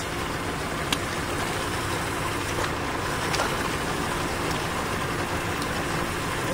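Steady engine hum running evenly throughout, with a single light click about a second in.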